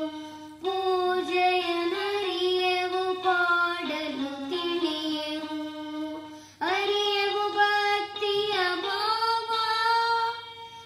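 Small toy electronic keyboard playing a melody in held notes, with a child's singing voice joining near the end.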